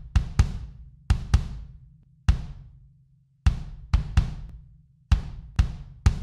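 Kick drum playing back on its own, a sampled Groove Agent kick: about ten hits, some single and some in quick pairs, each with a deep boom that rings out and dies away before the next.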